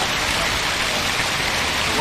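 Fountain water splashing in a steady rush.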